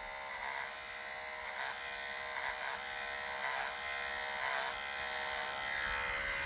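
Electric hair clippers buzzing steadily as they skim over a tanned deer hide, trimming the guard hair tips. The buzz swells slightly with each pass, about once a second.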